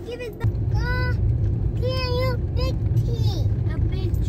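Steady low rumble of a car driving, heard from inside the cabin, starting abruptly about half a second in. A few short, high-pitched voice sounds come over it.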